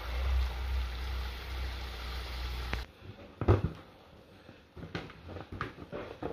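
Pork sausages frying in hot lard in a cauldron, a steady sizzle and bubble with a low hum beneath, cut off suddenly about three seconds in. A few knocks follow in the quieter remainder.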